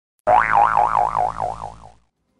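A cartoon 'boing' spring sound effect: one springy tone wobbling up and down about four times a second, fading away over about a second and a half.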